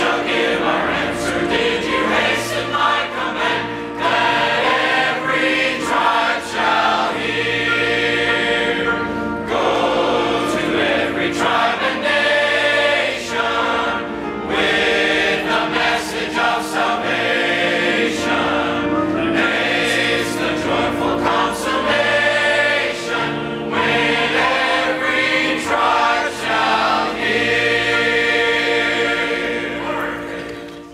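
A church congregation and choir singing a gospel song together in unison and harmony, with piano accompaniment; the song finishes at the very end.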